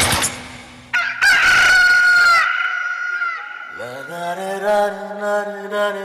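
Loud rock music breaks off, then a recorded rooster crow plays as a sound effect in the dance soundtrack, one drawn-out call. About four seconds in, a chanted vocal note slides up and holds steady.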